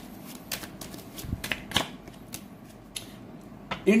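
Tarot deck being shuffled by hand: a string of irregular light snaps of the cards, a few each second, before the next card is drawn.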